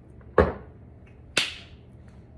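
A glass jar being set down on a kitchen countertop: two sharp knocks about a second apart, the first the louder.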